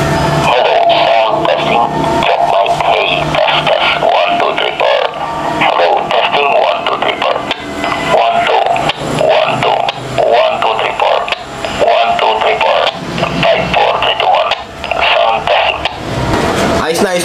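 Music with some voice coming through a handheld transceiver's small speaker, tinny and narrow in range: the received transmit audio of an Icom IC-28H under test for a transmit audio fault.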